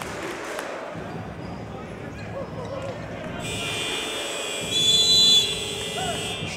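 Indoor basketball arena ambience with crowd hubbub during a stoppage in play, then a steady buzzer-like tone starting about halfway in and holding for about three seconds, loudest near the end.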